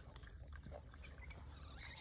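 A gray langur chewing an apple: faint scattered chewing clicks over a low steady rumble.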